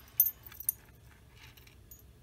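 Metal pendant and fine chain necklace clinking as it is picked up and handled: two short clinks within the first second, then faint light jingling.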